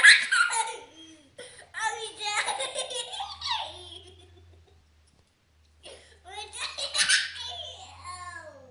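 A young child laughing hard in repeated bouts of giggling, with a break of more than a second about halfway through before the laughter starts again.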